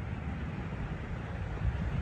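Steady low rumbling noise of shallow seawater and wind moving around the microphone.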